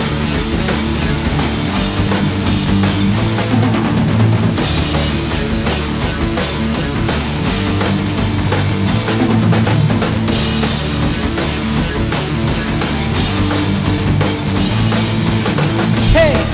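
Acoustic drum kit played continuously with cymbals and bass drum, along with rock music that has guitar in it.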